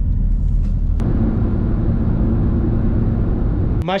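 Steady low rumble of road and engine noise inside a moving car's cabin, changing abruptly about a second in to a slightly different tone with a faint hum, and cutting off near the end.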